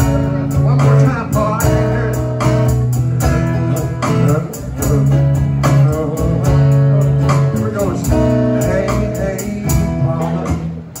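Live band playing at a steady tempo: strummed acoustic guitar over electric bass, with an electronic hand-percussion pad keeping the beat.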